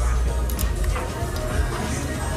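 Background music over restaurant noise with a steady low rumble, and a short click about half a second in.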